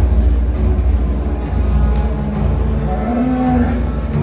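A Jersey cow moos once, briefly, about three seconds in, over loud background music with a heavy bass.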